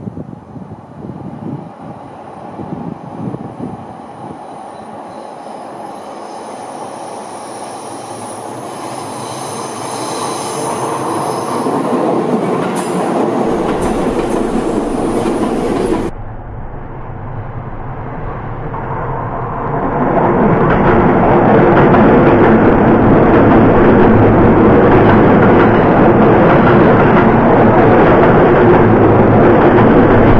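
Electric commuter train on a curve, its wheels squealing in high steady tones that grow louder. The sound cuts off abruptly about halfway through. Then a Seibu 4000 series electric train approaches and runs past close by, its running and wheel noise loud and steady.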